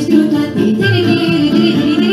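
A girl sings a folk song into a microphone over amplified instrumental accompaniment. The accompaniment has a steady, repeating bass-and-chord beat, and the voice wavers with vibrato.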